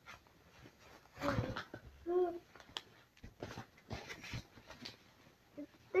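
Fabric backpack being handled: rustling and small clicks as items are pushed into a pocket, with one brief pitched whine-like sound about two seconds in.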